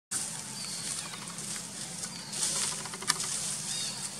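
Outdoor forest ambience: a steady high hiss, short high chirps about once a second, and a sharp click about three seconds in.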